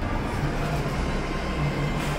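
Low, steady mechanical rumble with a faint hum.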